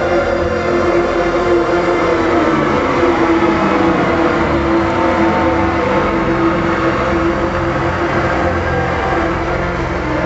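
Live band's song outro played loud on a concert PA: long-held synth chords over a bass line, with no clear drum beat, recorded from within the crowd.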